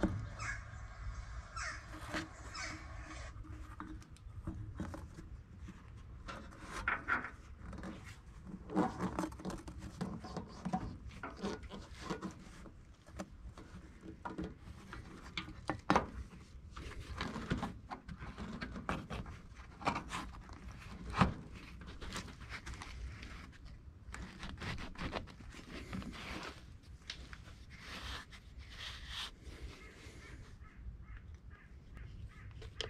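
Irregular rubbing, scraping and knocking as a large rubber hose is handled and pushed onto a metal pipe by hand, with a few sharper knocks scattered through.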